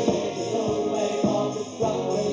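A band's song with several voices singing together over a steady beat.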